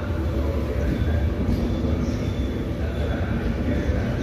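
Trenitalia Intercity Notte passenger coaches rolling past, a steady rumble of wheels on the rails with a faint high squeal now and then, echoing in the covered station.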